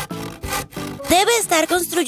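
A hand saw cutting through a wooden plank as a cartoon sound effect over light background music, followed from about a second in by a character's voice.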